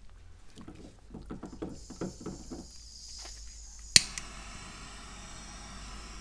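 Small handheld butane torch being lit: a few soft handling knocks, then a steady hiss starting about three seconds in and a sharp ignition click at about four seconds. The hiss of the burning flame continues after the click.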